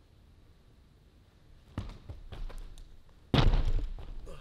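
Feet striking a carpeted gymnastics spring floor as a tumbler sets up a trick: a thud a little under two seconds in, softer steps after it, and a heavy thump of a hard step or takeoff near the end.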